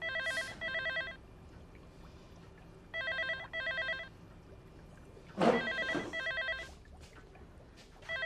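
Landline telephone with an electronic ringer, ringing in double rings about every three seconds. A brief louder sound comes over the third ring.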